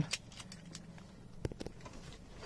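Car keys on a flip-key fob clinking and rustling as they are pulled out of a pocket: a few light, scattered clicks, the sharpest about one and a half seconds in.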